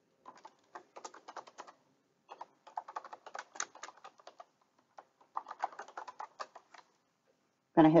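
Typing on a computer keyboard: three quick runs of keystrokes with short pauses between them.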